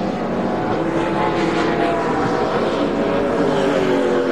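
Stock car V8 racing engines running on the track, their pitch drifting slowly up and down.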